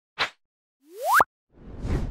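Logo intro sound effects: a short tick, then a quick rising pitch glide that drops sharply at its top about a second in, followed by a swelling whoosh as the title card appears.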